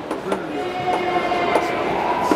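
Steady background noise of a busy indoor exhibition hall, with a faint steady tone coming in about a second in and a few light clicks and taps.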